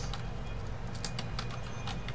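Computer keyboard keys clicking in short, irregular strokes, several in quick succession from about a second in, over a steady low hum.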